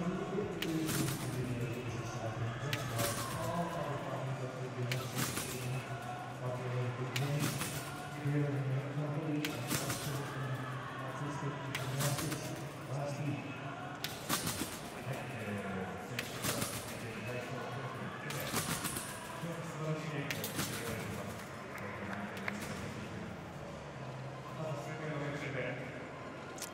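Competition trampoline in use: a sharp impact of bed and springs each time the gymnast lands, about every two seconds, with a voice talking underneath.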